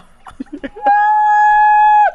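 Stifled, broken laughter, then a loud, high-pitched squeal of laughter held on one steady note for about a second, dropping in pitch at the end.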